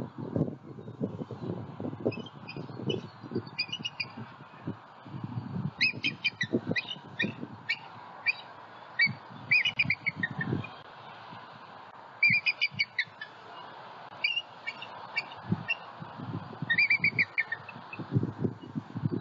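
Bald eagle calling: runs of short, high, chittering notes in several bursts, the calls of an adult eagle flying in and landing beside a juvenile. Irregular low rumbles sound underneath.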